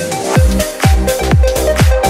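Nu disco house music: after a held bass note, a steady four-on-the-floor kick drum comes back in about half a second in, a bit over two beats a second, under a repeating synth riff.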